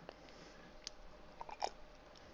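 A quiet pause with a low hiss and a few faint, short clicks, one a little before a second in and two more around a second and a half.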